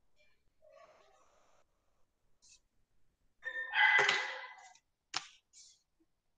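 A short chime-like tone with several steady pitches sounds a little past halfway, followed by a sharp click.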